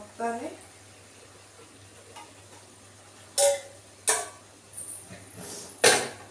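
Stainless-steel cookware clinking as a small saucepan is handled and set down on the kitchen counter: three sharp metallic knocks in the second half, the last the loudest, the first with a short ring.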